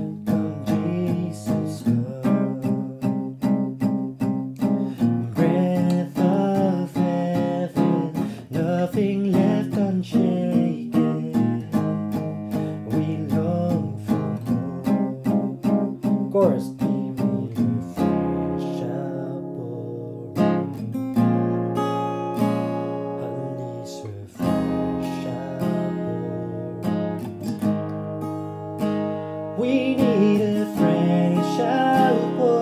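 Steel-string acoustic guitar with a capo on the first fret, strummed in chords through a worship song's pre-chorus into its chorus, with a man singing along. About eighteen seconds in the quick strumming gives way to a few chords left to ring, then the strumming picks up again near the end.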